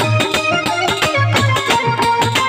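Live folk music: a dholak hand drum played in a fast, steady rhythm with deep bass strokes, under a sustained reedy melody from a harmonium.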